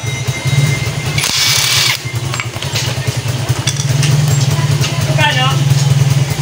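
A cordless drill-driver whirs briefly, about a second in, as it turns a screw in a motorcycle stator. Under it a motorcycle engine idles steadily in the background.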